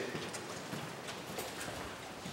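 Footsteps of two people walking on a hard, polished corridor floor, faint and even.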